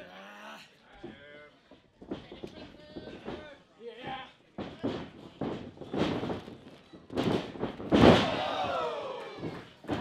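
Wrestlers crashing onto the canvas of a wrestling ring, a couple of hard impacts with the loudest about eight seconds in, amid shouting and a long falling yell right after the biggest hit.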